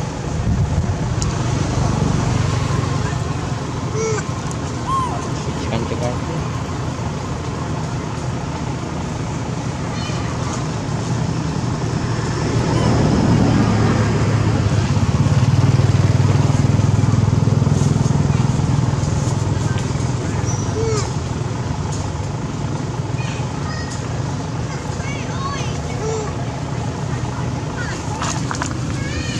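Low rumble of passing road vehicles, louder for several seconds about halfway through, under background voices and a few faint short chirps.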